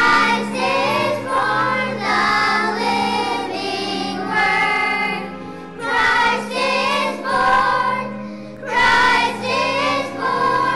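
Children's choir singing with instrumental accompaniment that holds steady low notes. The singing comes in phrases, with short breaks about six and nine seconds in.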